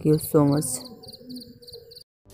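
A brief spoken word at the start, then faint, rapid, high-pitched insect chirping in the background, like a cricket: short pulses repeating evenly, about five a second.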